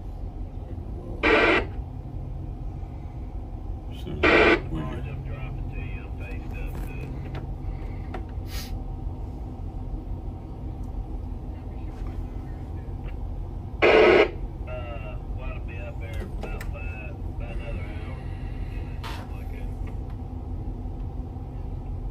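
Steady low drone of the towboat's engines heard inside the wheelhouse. Three short, loud bursts of radio noise come about a second in, about four seconds in and near the middle, with faint voices over the radio between them.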